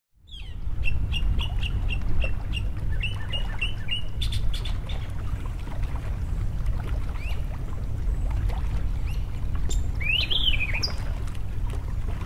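Birds calling over a steady low rumble: two quick runs of short chirps, about four a second, in the first few seconds, scattered calls after, and a louder rising and falling call near the end.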